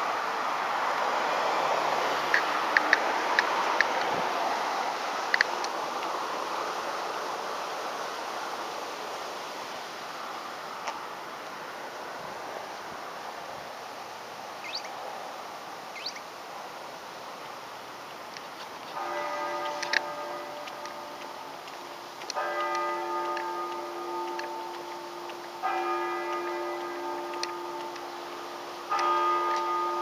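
Road traffic noise that fades over the first several seconds, with a few sharp clicks. In the second half, held pitched tones with several notes at once sound in blocks of about three seconds, each starting suddenly.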